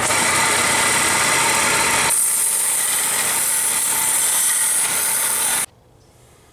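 Belt sander running with a Delrin screwdriver-handle scale being sanded on the belt: a loud, steady noise that turns thinner and hissier about two seconds in and stops abruptly near the end.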